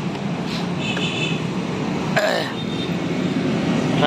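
Street traffic: a steady drone of motorcycle and car engines passing on a busy road, with a short high-pitched tone about a second in.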